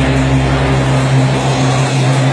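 Loud live rock music from a band, with a distorted low note held steady.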